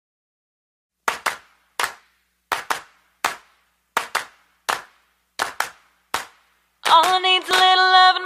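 Handclaps keeping the beat of the song's intro, a quick pair then a single, repeating about one and a half times a second. Near the end, voices come in singing in harmony over them.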